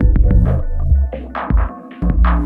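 Abstract techno: a deep bass line comes in sharply at the start and drops out briefly near the end, under steady synth tones and scattered noisy percussion hits.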